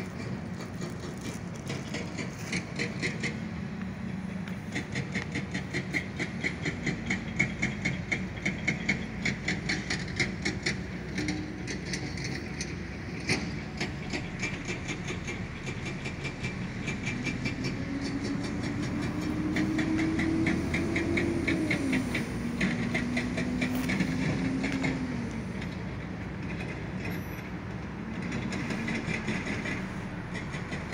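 Roadside traffic ambience: a vehicle goes by, its low engine tone rising and then falling as the sound swells and fades. A rapid, even ticking runs through much of it.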